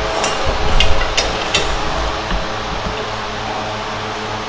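Four sharp metal knocks and clinks in the first second and a half from mini tillers being assembled by hand with tools, over a steady background hum.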